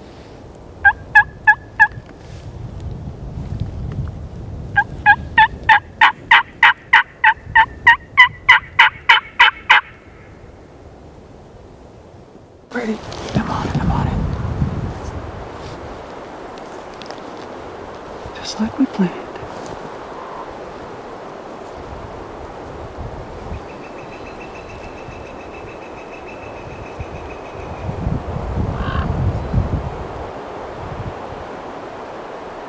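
Turkey yelping, loud and close: a short run of four yelps, then after a pause a longer, even run of about fifteen yelps. A few seconds later comes a burst of broad noise.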